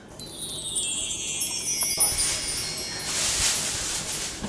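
Shimmering chime-like tones sliding slowly down in pitch over about two seconds, followed by a rustling hiss.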